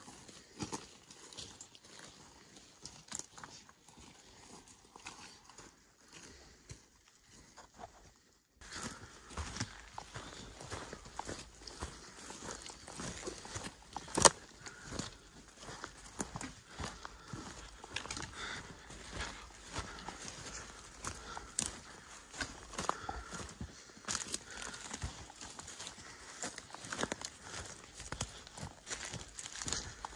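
Footsteps of people hiking over a forest floor of dry twigs, deadfall and low brush, an irregular run of crunches and knocks. About eight and a half seconds in the sound cuts and the steps become louder and closer.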